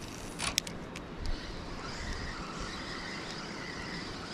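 Spinning reel on a fishing rod: a few sharp clicks about half a second in, then a steady faint whir as the reel is cranked to retrieve the lure.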